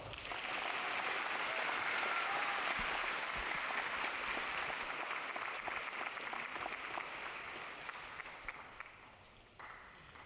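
Audience applauding. The clapping builds over the first couple of seconds, holds, and dies away over the last few seconds.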